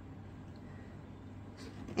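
Quiet room tone with a steady low hum and no distinct events.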